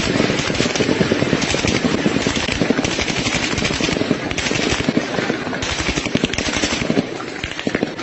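Sustained bursts of rapid automatic gunfire, many shots a second, running on without a break.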